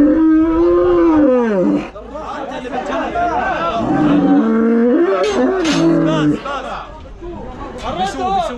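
A bull calf restrained in a metal cattle crush bellowing twice: long, drawn-out calls, the first lasting nearly two seconds and the second starting about halfway through. Men's voices chatter between the calls.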